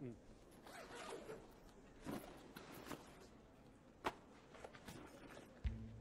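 A bag being unzipped and searched: faint zipper and rustling of things being handled, with a sharp click about four seconds in.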